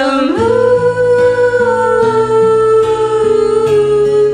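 A female voice holds one long note for about three seconds, easing down slightly near the end, over a karaoke backing track with guitar.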